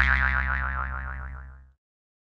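A springy cartoon 'boing' sound effect: one tone that wobbles up and down in pitch about seven times a second, fading away and stopping less than two seconds in.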